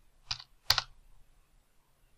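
Two keystrokes on a computer keyboard, about half a second apart, the second louder, as a focal-length value of 100 is typed into a field.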